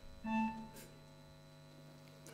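A single short electronic keyboard note, about a quarter of a second in and lasting under half a second, over a faint steady hum from the stage amplification.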